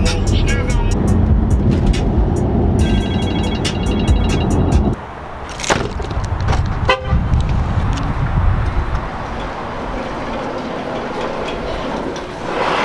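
Low rumble of a car driving, heard inside the cabin, cut off abruptly about five seconds in. Then a thud and, a second later, a short horn chirp as the car is locked with its remote key fob.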